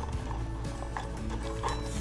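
Quiet background music with a few faint light taps and rustles of a trading card being handled and slid into a plastic card sleeve.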